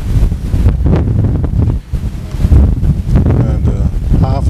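Wind buffeting the microphone: a loud, gusty low rumble, with faint voices near the end.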